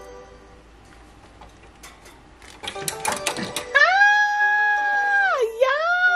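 A woman's high-pitched excited squeal, held for about a second and a half before falling away, with a second squeal starting near the end. A short burst of clicks comes just before the first squeal.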